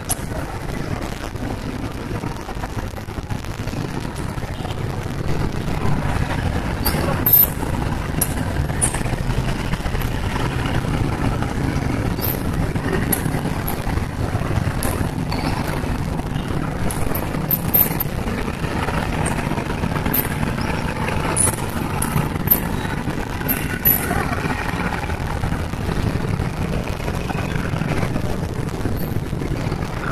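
Steady rumble of dense city traffic, car and motorcycle engines idling and creeping along, heard from inside a car, with a scatter of short sharp clicks through the middle.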